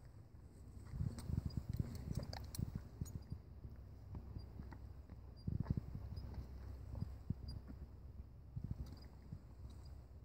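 Irregular soft knocks and a few sharper clicks as a bridle is fitted on a standing horse: the bit and buckle hardware moving and the horse shifting. The sounds come in clusters, about a second in and again around five and a half seconds.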